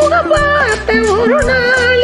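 A woman singing a Tamil song over a karaoke backing track. Her voice bends and wavers in quick ornaments above a steady bass beat.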